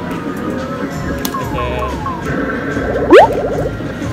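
Electronic arcade machine music, with game sound effects over it: four short falling blips about a second and a half in, then one loud, quick rising sweep like a boing about three seconds in.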